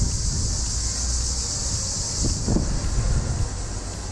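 A steady, high-pitched chorus of cicadas in the roadside trees, under a louder low rumble of wind on the microphone and street traffic.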